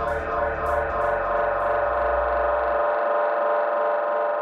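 Electronic music from a DJ mix: a held synthesizer chord sustains throughout, while the deep bass underneath fades out about three seconds in.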